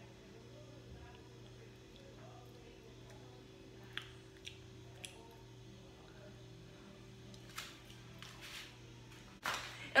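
Quiet kitchen room tone with a steady low hum, broken by a few faint clicks of a metal spoon against a frying pan around four to five seconds in, then some brief rustling noises near the end.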